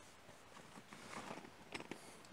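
Faint rustling and handling noise, with a few soft clicks near the end.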